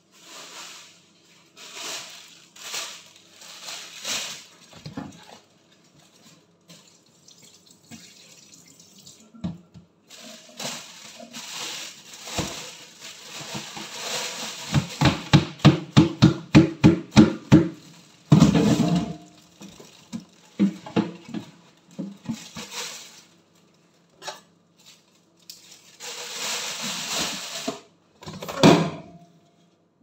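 Water running and splashing in a sink in several bursts, with a quick run of splashes, about five a second, near the middle.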